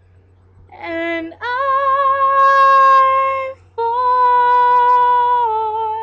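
A woman singing a cappella in slow, long-held notes: a short note about a second in, then a long sustained note with slight vibrato, a brief breath, and a second held note that steps down in pitch near the end.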